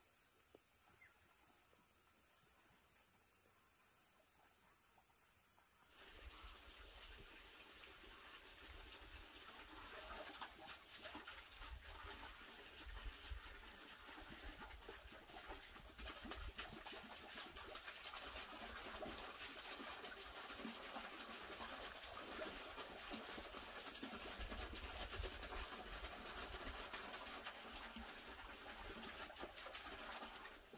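Quiet outdoor ambience with a thin, high insect drone, then about six seconds in a sudden change to a louder, steady rushing hiss with an uneven low rumble, typical of wind buffeting the microphone.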